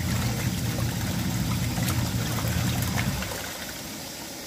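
Compact washing machine agitating a load of cloth diapers in water: a steady motor hum under water sloshing and churning. The motor hum fades out about three seconds in, leaving quieter water noise.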